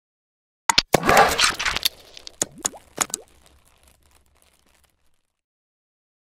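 Animated-intro sound effects: two sharp clicks less than a second in, a noisy swish, then more clicks with short rising pitch glides, dying away by about five seconds in.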